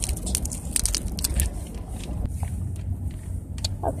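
Thin plastic packet crinkling and crackling in irregular clicks and rustles as it is pulled open by hand.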